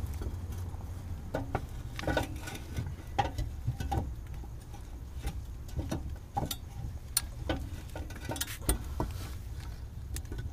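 Irregular light clicks and knocks of hands and tools on metal parts under a car, over a low steady hum.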